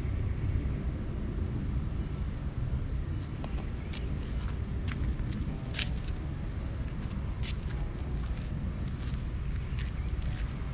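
Outdoor ambience: a steady low rumble, with a few short, sharp high sounds scattered through the middle.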